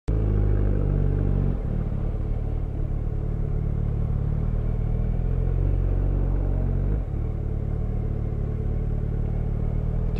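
Yamaha FZ1N motorcycle's inline-four engine running steadily at low revs while the bike rolls slowly between lanes of stopped traffic, with two brief dips in the engine note, about a second and a half in and at about seven seconds.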